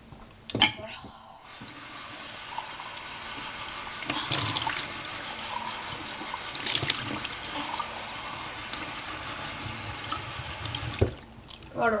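Water running steadily for about nine seconds and then cut off abruptly. It starts after a sharp knock.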